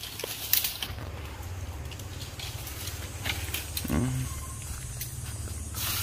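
A small open fire of dry bamboo leaves and twigs burning under a cooking pot, giving scattered crackles and a faint hiss over a steady low rumble.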